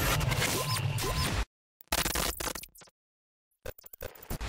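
Glitch-effect sound for a channel logo sting: loud bursts of distorted digital noise and static that cut off abruptly into dead silence twice, then stutter back in near the end.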